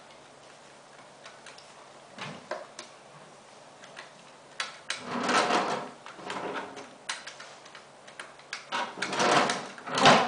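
Corded desk telephone being handled by a small child: scattered light plastic clicks and knocks from the handset and keypad, and two louder, longer bursts of handling noise, one about midway and one near the end.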